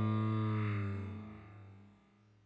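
A single held low synthesizer note with a rich stack of overtones, steady at first, then fading away over the second half.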